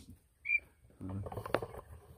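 A single short, high chirp from a male quail about half a second in, then a sharp click near the end.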